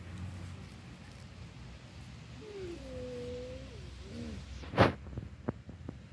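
A baby's soft wordless vocalising, a sliding, then held and wavering note lasting about two seconds. It is followed by a single sharp knock, louder than the voice, and a few light clicks.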